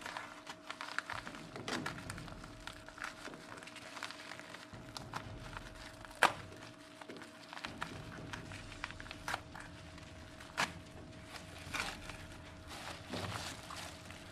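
Padded paper cushion mailer being handled and torn open by hand: irregular paper crinkling and rustling with scattered crackles, one sharper snap about six seconds in. Near the end the plastic-packaged case is slid out of the envelope.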